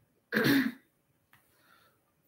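A woman clearing her throat once, briefly.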